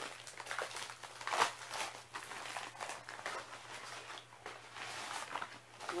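Plastic and foil packaging crinkling and rustling in irregular crackles as a cosmetics bag is handled and opened, with the sharpest crackle about a second and a half in.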